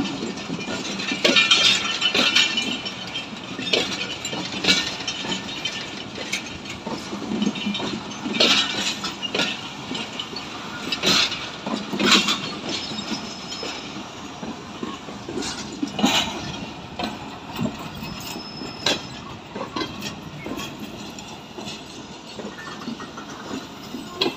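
Pakistan Railways passenger coaches rolling past, their wheels clacking over rail joints with irregular metallic knocks through the train, over a steady rumble. Two brief high squeals are heard, one about halfway through and one a little later.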